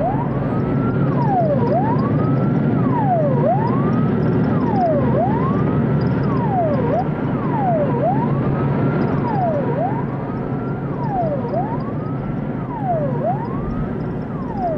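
Police siren wailing, its pitch rising and falling in a steady repeating cycle about every second and a half, over a steady background of traffic noise.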